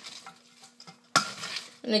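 Tongs tossing a dressed cabbage salad in a stainless steel bowl: soft, wet stirring noises, with one sharp clink of metal on the bowl a little past halfway.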